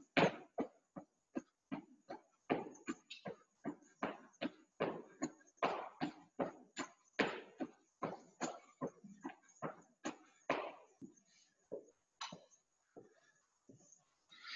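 Feet landing in quick small hops on a gym floor, a short thud about two to three times a second, stopping about eleven seconds in, followed by a few scattered thuds.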